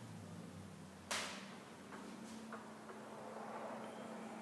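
Quiet room tone with a faint low hum, broken by one sharp click about a second in and a few much fainter ticks after it.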